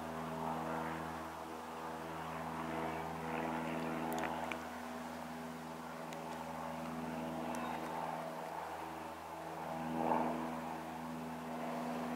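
A steady low mechanical drone: a hum with evenly spaced overtones, swelling slightly about ten seconds in.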